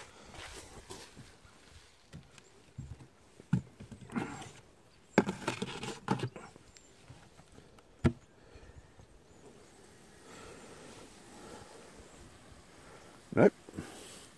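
Scattered knocks, clatters and scrapes as a wooden beehive is opened by hand: stones lifted off the lid and set down, and the lid lifted off the box, with the sharpest knock about 8 seconds in.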